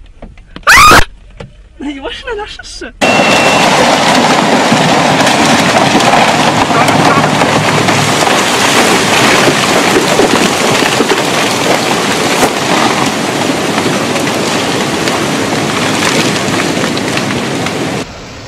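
Strong wind rushing steadily, the sound of a small waterspout whirling spray off the water. It starts abruptly about three seconds in, after a short stretch of voices and one sharp, loud burst.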